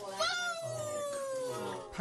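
A person's drawn-out vocal exclamation of amazement: one long cry that starts just after a sharp intake and slides steadily down in pitch for about a second and a half.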